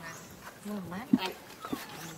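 Indistinct voices in the background, with a single sharp click about a second in.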